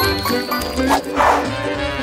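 Upbeat background music with a steady bass beat. About a second in, a short rushing noise sounds over it.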